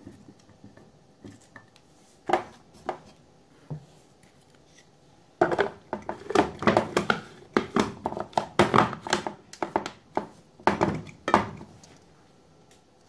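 Plastic knocks and clattering as a food chopper's white plastic top unit is handled and fitted onto its bowl, with no motor running. A couple of sharp knocks come about two to three seconds in, then a dense run of clatter from about five seconds in until near the end.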